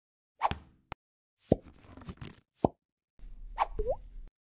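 Animated logo intro sound effects: a quick series of pops and clicks, then a short rising tone near the end as the logo appears.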